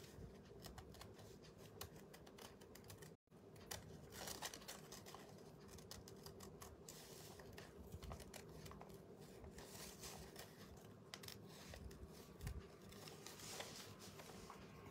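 Scissors snipping through thin decoupage rice paper, faint, in many small cuts as a star shape is cut out.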